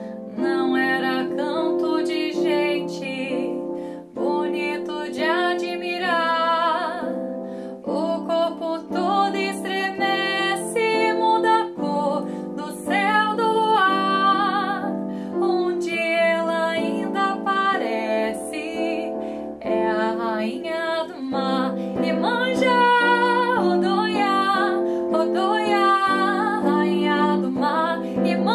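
A woman singing a slow, sustained melody with vibrato over a soft instrumental accompaniment of held chords.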